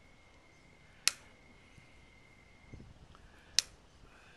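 Hoof nippers snipping through a Texas Longhorn cow's hoof wall as the toe is trimmed: two sharp snaps about two and a half seconds apart.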